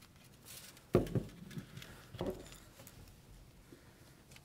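Quiet handling of a spool of copper wire as wire is pulled off it, with a sharp knock about a second in and a softer one just after two seconds.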